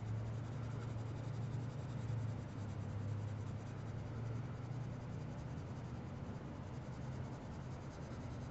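Graphite pencil shading on paper: the lead rubs back and forth in a soft, continuous scratch as dark tone is built up. A steady low hum runs underneath.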